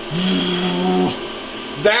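A man's voice holding a low, steady drawn-out 'uhh' for about a second, followed by a short spoken word near the end.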